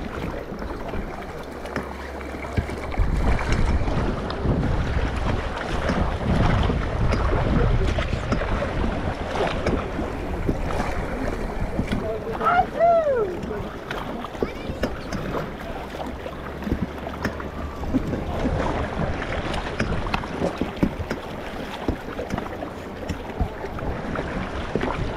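Raft paddles stroking and splashing in river water beside an inflatable raft, with the river running and wind on the microphone. About halfway through, a short vocal call slides up and down.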